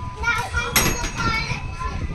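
Children's voices as they play, with a sharp knock about three-quarters of a second in.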